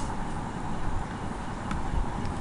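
Steady background noise with a low rumble and a faint steady hum, broken by two short clicks, one at the start and one near the end.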